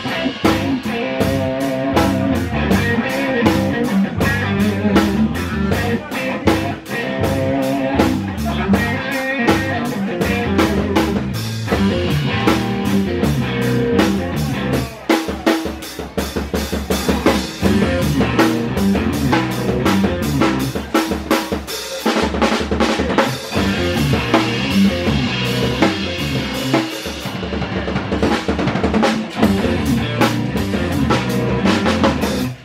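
Live rock band playing: drum kit with bass drum, snare and cymbals keeping a steady beat, under electric bass and electric guitar, with the drums to the fore.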